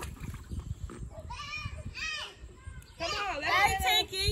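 A child's high-pitched voice calling out twice, then several voices talking loudly over each other near the end.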